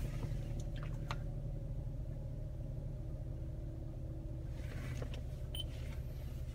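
The 2013 Toyota RAV4's 2.5-litre four-cylinder engine idling in park, heard from inside the cabin as a steady low rumble with a faint steady hum above it. There are a few faint clicks about a second in.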